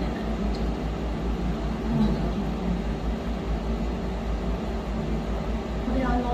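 Steady low hum and hiss of room noise, with no distinct event standing out.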